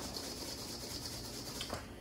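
Chopped rhubarb and sugar sliding around inside a stainless steel mixing bowl as it is shaken to coat the pieces with sugar: a quiet, steady rustle.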